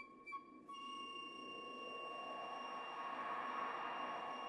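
A quiet passage of orchestral music. A few quick repeated high notes stop under a second in and give way to one long held high note, over a soft orchestral background that slowly swells.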